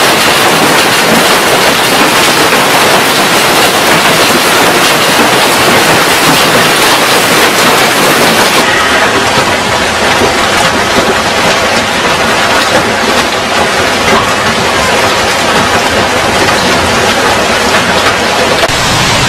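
Storm noise: strong wind with hail and heavy rain pelting down, a dense, steady roar. About halfway through it changes to another stretch of hurricane wind and driving rain.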